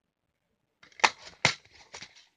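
Plastic DVD eco-case being opened by hand: handling rustle with two sharp plastic snaps about half a second apart, then a fainter click near the end.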